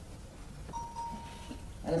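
A single quiet steady beep, one held tone lasting about a second, starting a little under a second in.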